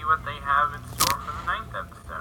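Thin-sounding speech played back from a video, with one sharp click about a second in.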